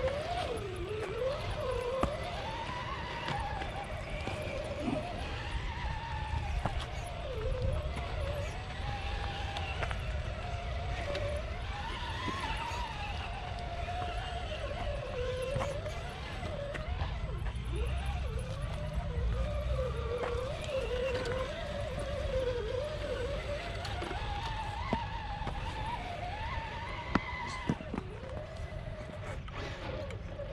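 RC rock crawler's brushed electric motor and drivetrain whining as it crawls over rock, the pitch rising and falling with the throttle. There are a couple of sharp clicks near the end.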